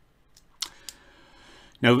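Near-silent room with a couple of faint clicks and a soft rustle of handling noise about half a second to a second in. A man's voice starts just before the end.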